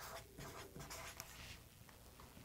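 Marker pen writing on paper, faint, with a few short strokes in the first second and a half.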